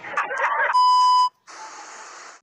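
Edited-in meme sound: a brief excited shout from a man is cut off by a loud, steady beep tone of about half a second. After a short gap comes a burst of TV static hiss.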